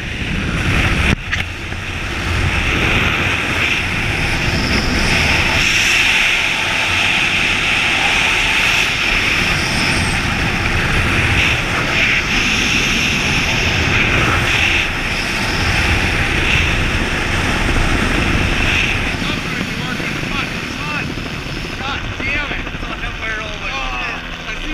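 Helicopter flying overhead, heard from a person hanging on a longline beneath it: a steady, loud rush of rotor and turbine noise mixed with wind buffeting the helmet-mounted microphone.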